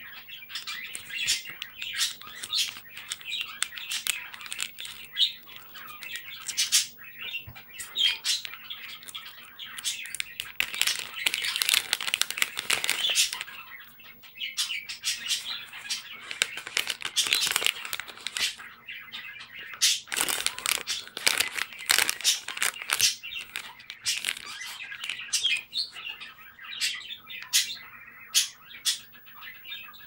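A resealable foil snack packet crinkling and crackling as hands open it and handle it, in dense bursts of sharp crackles that come thickest in two stretches, around a third of the way in and again about two-thirds of the way in.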